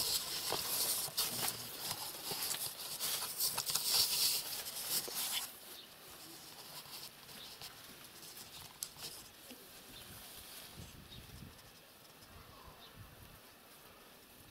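Dry rustling and crackling with many small clicks for about five seconds, then only a faint, quiet background.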